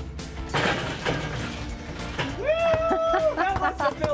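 Basketball striking and rolling around the bowl of a Weber kettle grill used as a hoop, rattling against the metal, then a drawn-out 'ooh' from a person about two and a half seconds in.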